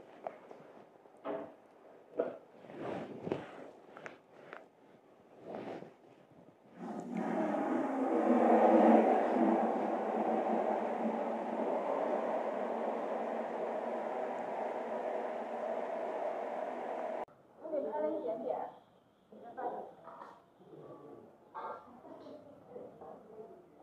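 Voices reciting a prayer together in a steady chant, starting suddenly about seven seconds in and cutting off sharply about ten seconds later. Soft murmurs and small clicks come before it, and quieter voices after.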